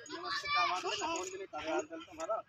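A young child's high-pitched voice calling out without clear words, wavering in pitch, in two stretches with a short break about one and a half seconds in.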